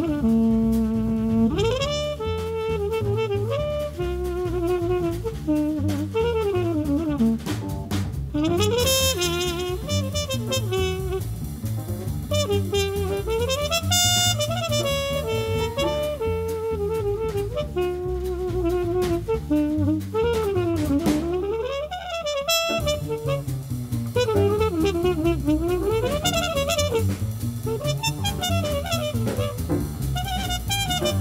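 Small-group jazz recording: a trumpet plays a flowing melodic line over piano, walking bass and drum kit with ride cymbal.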